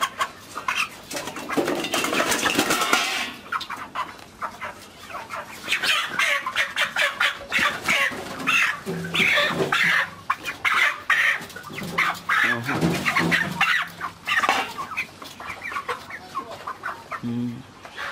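A flock of Ross 308 broiler chickens clucking and calling, many short overlapping calls coming one after another.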